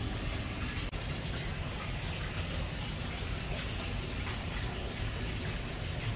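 Steady hiss of falling or running water, with a brief break about a second in.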